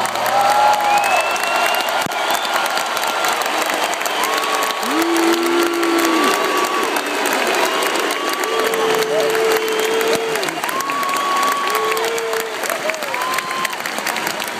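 A large stadium crowd applauding and cheering as a song ends, with a dense patter of clapping. Several nearby voices give long, held shouts over it, one after another.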